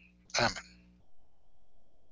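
A man's short voice sound, once, about half a second in, followed by faint low background noise.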